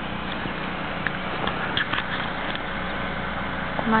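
Snow being brushed and pushed by hand on a car's body: soft crunching over a steady hiss, with a few faint crunches.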